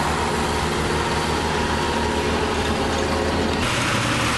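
Farm tractor engine running steadily while it pulls a cultivator through the soil. About three and a half seconds in, the sound changes abruptly to a second tractor pulling a seed drill.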